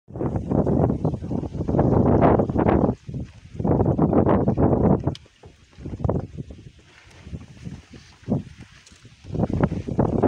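Wind buffeting the phone's microphone in gusts: a loud rumbling rush for most of the first five seconds, falling to a lower, patchy rustle, then surging again near the end.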